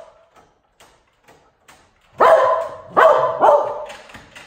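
Cocker spaniel barking: three barks close together about two seconds in, after a quiet start with a few faint ticks.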